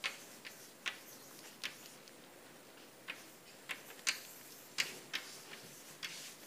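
Chalk writing on a blackboard: a string of about nine sharp, irregular taps and short strokes as the chalk meets the board.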